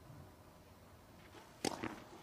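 Quiet court background, then near the end a sharp pop of a tennis racket striking the ball, followed by a softer knock.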